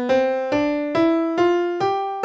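Piano playing the A natural minor scale upward one note at a time, a little over two notes a second, each note struck and decaying. The seventh step is not raised, so there is no leading tone pulling into the top A.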